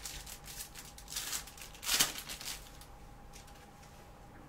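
Trading card pack wrapper crackling as gloved hands tear it open, with one loud rip about two seconds in, then only faint handling.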